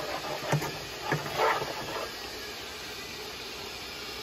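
Brown gravy simmering in a frying pan with a steady hiss, with a few light knocks of a wooden spoon against the pan as it is stirred in the first second or so.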